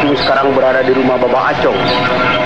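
Several voices sounding at once and overlapping, with no clear words.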